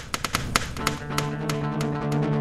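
Electric cello with live electronics: a run of sharp taps at uneven intervals, then a low sustained tone with overtones comes in about halfway through and holds.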